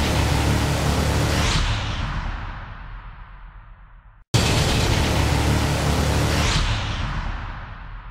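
Edited sound effect: a sudden boom followed by a noisy whooshing wash with a deep rumble that fades away over about four seconds. It breaks off and plays again the same way about halfway through.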